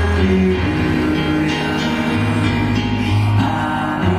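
Live band performing a slow ballad: sustained keyboard chords with acoustic guitar and a male lead vocal, recorded from the audience through the PA.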